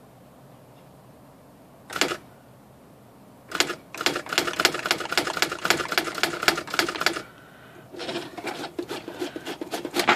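Brother electronic daisywheel typewriter printing a line of capital letters at 15 pitch (micro spacing). One sharp strike about two seconds in, then a fast, even run of print strikes, about eight a second, for roughly three seconds. A second, quieter run of machine clatter follows near the end.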